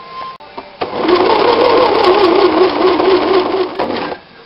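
Electric sewing machine stitching a seam: it starts about a second in, runs steadily for about three seconds with a slightly wavering hum, and stops just before the end.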